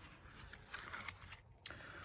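Faint rustling and handling of paper sticker-book pages, with a few soft light crinkles.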